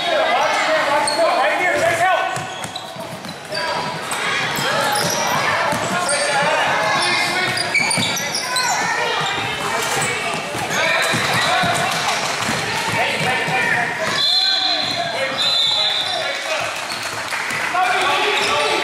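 Basketball dribbled on a hardwood gym floor amid players' and spectators' shouting and chatter, all echoing in a large gym hall. Two short high squeaks come about three-quarters of the way through.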